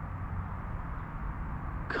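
Steady outdoor background noise, a low even hum and hiss with no distinct sound events; a man's voice starts right at the end.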